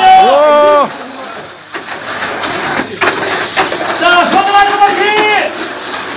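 Raised voices calling out, once at the start and again about four seconds in, with the murmur and clatter of a busy room between.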